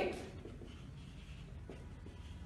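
Marker pen writing on a whiteboard: faint scratchy strokes as a word is written out.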